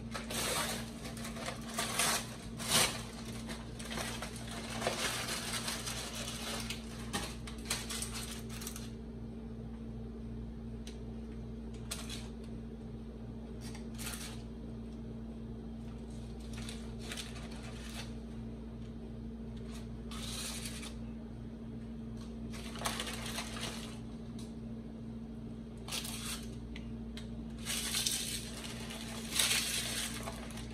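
Crinkling of a paper Milano cookie bag as a hand reaches in and pulls out cookies, in repeated bursts that are busiest at the start and again near the end, over a steady low hum.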